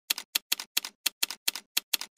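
Typewriter key-strike sound effect: a steady run of sharp clacks, about five a second, each with a quick double strike.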